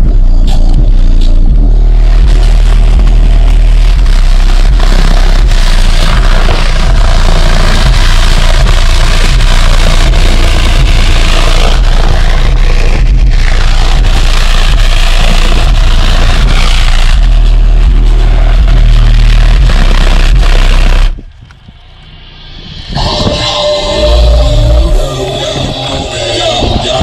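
Deaf Bonce car subwoofer playing very loud, deep bass, with a sheet of graph paper over the enclosure flapping and rattling in the blast of air. The bass cuts off suddenly about 21 seconds in, and a shorter burst comes back a couple of seconds later.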